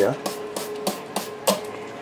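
Hand trigger spray bottle squirting a chemical onto the media in a vibratory tumbler: a series of short, sharp squirts at irregular intervals.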